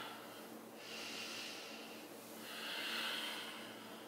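A woman breathing slowly and audibly in time with a seated cat-cow stretch: two soft, drawn-out breaths of about a second each, the second a little louder.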